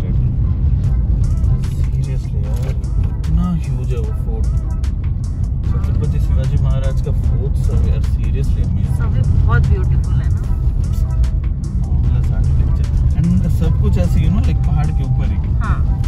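Steady low engine and road rumble inside a moving car's cabin, with music and voices over it.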